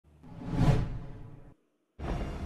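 A whoosh transition sound effect that swells up, peaks about two-thirds of a second in, fades, and cuts off sharply after about a second and a half.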